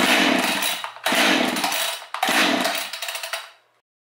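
Husqvarna 550XP Mark II two-stroke chainsaw pull-started three times in quick succession. Each pull gives about a second of engine noise that dies away, and the engine does not keep running.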